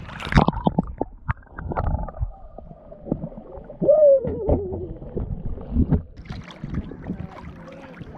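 Seawater splashing and sloshing irregularly against a camera held at the surface, turning to muffled underwater gurgling when it dips under about halfway through.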